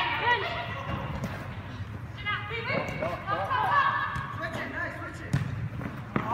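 Players shouting to each other during a soccer game, with a thud of the ball being kicked about five seconds in and footfalls on artificial turf.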